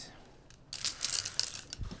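Jacket fabric rustling and hangers scraping and clicking along a clothes rail as garments are pushed aside, starting about two-thirds of a second in, with a soft low bump near the end.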